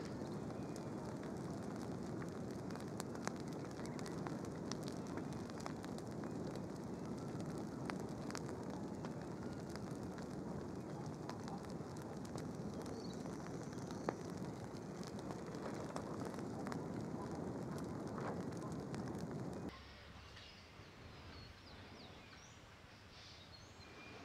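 Outdoor ambience: a steady low rushing noise with scattered faint crackles, which cuts off abruptly near the end to quiet room tone.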